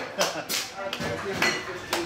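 A handful of sharp, irregular claps or knocks over low, indistinct voices.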